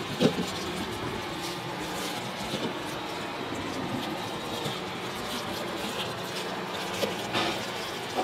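Steady background hum of a food-stall kitchen, with a few light knocks from hands working at the counter, the sharpest just after the start and two more near the end.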